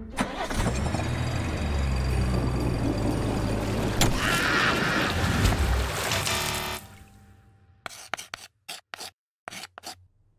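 Car engine sound effect running steadily for about seven seconds, then dropping away, followed by a handful of short sharp clicks near the end.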